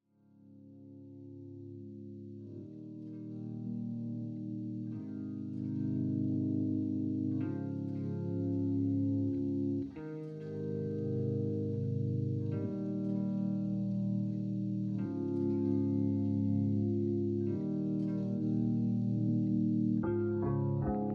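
Instrumental background music: sustained chords that change about every two and a half seconds, fading in at the start.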